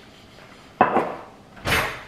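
Kitchen handling sounds: a sharp knock about a second in, as the Worcestershire sauce bottle is set down on the counter, then a short clatter near the end as a silicone spatula is picked up.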